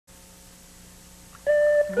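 Faint steady hiss and hum of a VHS tape recording, then about one and a half seconds in a sudden steady electronic beep tone as a cartoon TV bumper's soundtrack starts.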